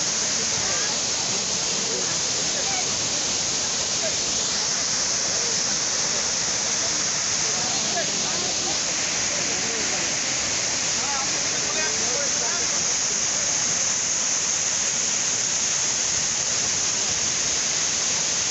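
Waterfall: a steady, loud rush of water pouring over rocks, with faint voices of people underneath.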